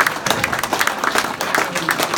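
Audience applauding: dense, rapid clapping from many hands, with a few voices in the crowd.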